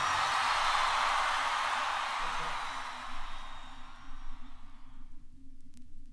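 The end of a live rock recording on a 45 RPM vinyl single dies away over about five seconds, the last ring of the band and crowd fading out. After that only the record's surface noise is left: a low hum, faint hiss and a couple of sharp clicks.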